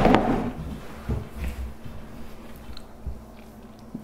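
A drinking glass set down on a wooden table, one sharp knock at the very start, followed by a short rush of noise that dies away within half a second. Then a few faint low thumps.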